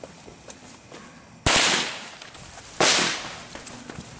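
Two loud firecracker bangs a little over a second apart, each trailing off in a short echo.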